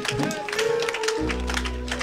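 Congregation clapping along, with held instrument notes underneath and a deep bass note coming in a little past halfway.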